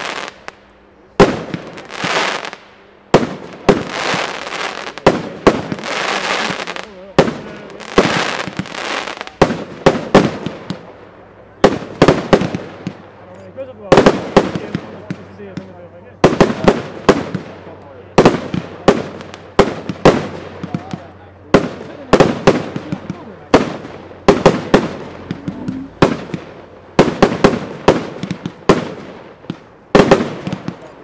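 Pyromould 'Mustang' multi-shot fireworks battery firing shot after shot, about one to two a second. Each shot is a sharp bang followed by a fading hiss as the shell rises and bursts.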